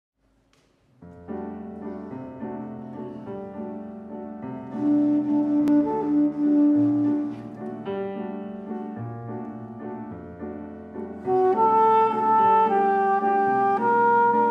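Live jazz: grand piano playing an opening passage of chords and melody, joined about eleven seconds in by a soprano saxophone playing held melody notes over it.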